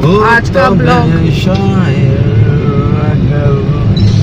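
A man singing in long, drawn-out notes inside a moving car, over the steady low rumble of the engine and road.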